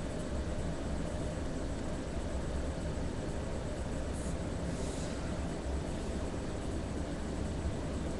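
Steady background hiss with a low hum beneath it, room tone picked up by the microphone; no distinct sound stands out.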